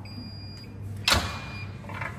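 Electronic ticket-gate scanner beeping twice as paper tickets are read, with a sharp click about a second in between the two beeps. A low steady hum runs underneath.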